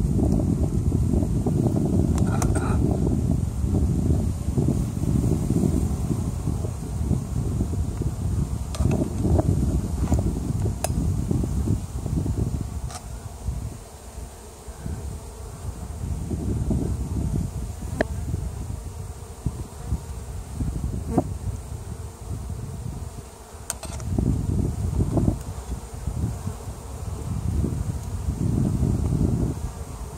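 Honeybee colony buzzing over an open hive, the hum rising and falling in loudness. A few sharp clicks of the wooden frames and hive tool knock through it as a frame is lifted out.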